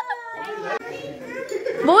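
Voices of a family group: a drawn-out voice trailing off from laughter at the start, then children's voices and chatter rising near the end.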